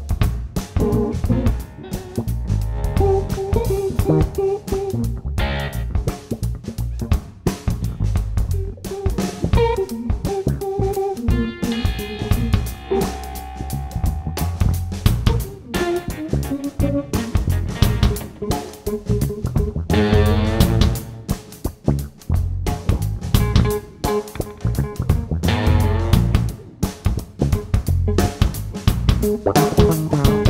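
Instrumental psychedelic funk-rock band playing: electric guitar lines over electric bass and a drum kit.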